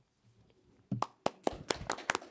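Applause from a small group, starting about a second in: a few people clapping at an uneven rhythm that grows denser.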